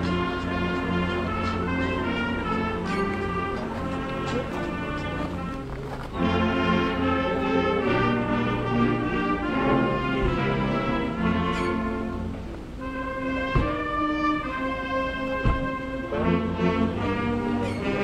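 Brass band playing a slow piece of held chords, the notes changing every second or two, with two low thumps in the second half.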